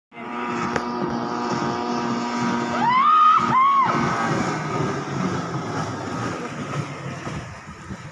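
Speedboat engine running at high speed out on the river: a steady hum that fades after about five seconds as the boat moves off. Two loud, gliding high-pitched tones come about three seconds in.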